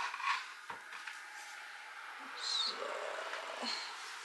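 A few light knocks and clicks of things being handled, then a bird calling faintly through the open windows about two and a half seconds in.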